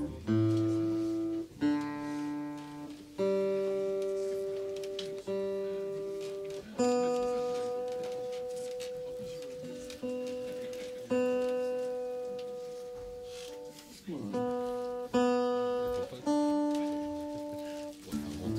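Acoustic guitar: about ten slow chords or notes, each struck once and left to ring out and fade before the next.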